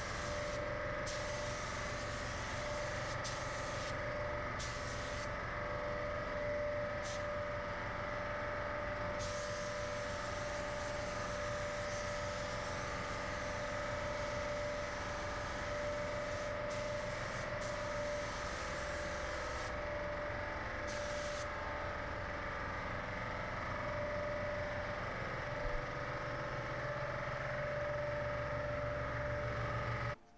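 Gravity-feed automotive paint spray gun spraying paint: a steady hiss of air and atomised paint with a steady whistle in it. The highest part of the hiss drops out briefly several times.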